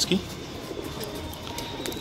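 Domestic pigeons cooing faintly in the background.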